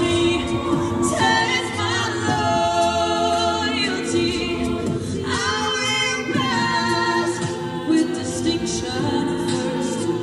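College a cappella group singing live through microphones: a male and a female lead voice over the group's layered backing vocals, with no instruments.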